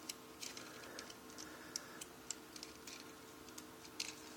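Faint, irregular clicks of plastic LEGO parts as the wheels of a LEGO DeLorean model are folded down into hover position, over a faint steady hum.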